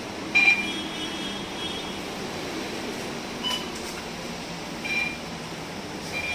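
Steady hum inside a bus, engine and air conditioning running, with short, high electronic beeps: a loud one about half a second in, then single beeps at about three and a half and five seconds.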